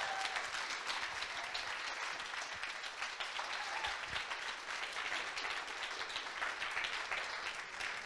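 Audience applauding: a roomful of people clapping steadily.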